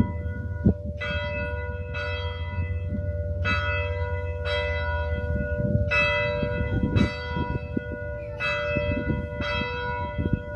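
A church bell ringing, its strokes coming in pairs about a second apart, with each pair starting about two and a half seconds after the one before. A steady hum hangs on between strokes.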